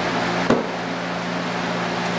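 Steady fan hum, with a single sharp knock about half a second in.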